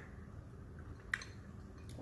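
Faint sounds of people chewing and eating instant ramen noodles, with a short light click about a second in.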